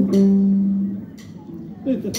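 The closing chord of a live band, led by guitars and bass, rings on and fades away over about a second, leaving a quiet hall with a couple of faint clicks.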